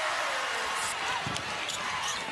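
Arena crowd noise at a basketball game, a steady haze of voices, with a few basketball bounces on the hardwood court.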